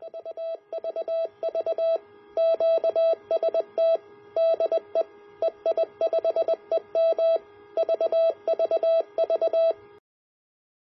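Morse code (CW) sent as a single steady beeping tone, keyed in quick short and long elements with gaps between characters.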